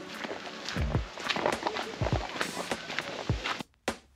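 Footsteps of a person hurrying along a dirt path, soft irregular footfalls that stop abruptly near the end.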